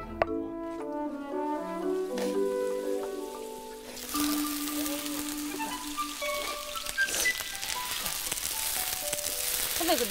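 Slabs of tofu frying in perilla oil on a hot pan: a steady sizzle sets in about four seconds in and continues under light background music with mallet-like notes.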